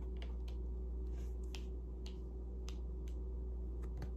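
Light clicks and taps of long fingernails and tarot cards as the cards are handled and laid down on a cloth-covered table, about eight at uneven spacing, over a steady low hum.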